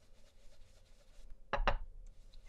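Soft rubbing of an ink blending brush worked over a stencil on a card, then two sharp knocks close together about a second and a half in.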